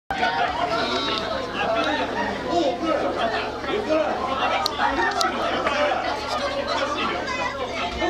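Several people chattering over one another, with a steady low hum underneath.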